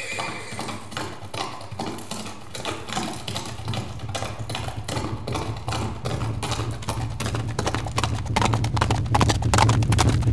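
A horse galloping: fast hoofbeats that grow steadily louder as it approaches, with a low rumble building under them from about halfway through.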